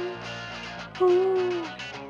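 Live rock band with electric guitar playing a song, a singer holding long sung notes over it: one note trails off just after the start, and a second begins about a second in and slides down as it ends.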